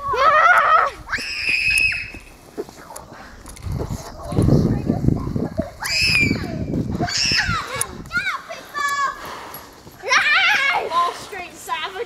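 Children shouting and screaming as they run across a lawn, in short high-pitched calls with one held scream near the start. A stretch of low rumbling noise on the microphone sits in the middle.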